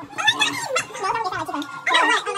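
A woman's voice talking animatedly, with no other sound standing out.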